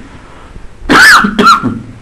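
Two loud coughs about half a second apart, the first a little longer.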